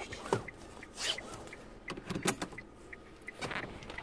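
Scattered knocks, clicks and rustles inside a car as a phone camera is handled and a seatbelt is pulled across and buckled, over a low car rumble.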